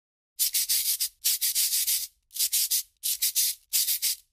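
Scratchy drawing strokes on paper, like a pen or marker scratching across a sheet, heard as five quick strokes of about half a second to a second each, with short pauses between them.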